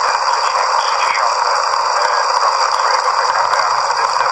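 Steady radio static hiss with no voice coming through, over a faint, steady high-pitched whine.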